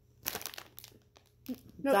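A plastic chip bag crinkling as it is handled: an irregular run of crackles for about a second.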